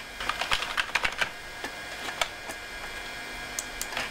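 Typing on a computer keyboard: a quick run of key clicks in the first second or so, then a few scattered keystrokes.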